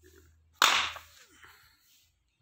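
Plastic audio cassette cases clattering: one sharp clack just over half a second in that fades over about half a second, then a smaller knock.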